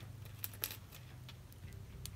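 Faint, sparse metallic clicks of safety pins and a small jump ring being handled between fingers, a few of them about half a second in.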